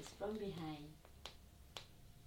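A woman's short wordless vocal sound falling in pitch, then sharp clicks of stiletto heels stepping on a hard floor, two of them about half a second apart.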